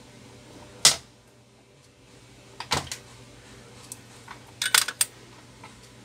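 A few short, sharp clicks and taps over a low steady hum: wires and a small circuit board being handled on a workbench. The loudest click comes about a second in, a pair follows near three seconds, and a cluster comes near five seconds.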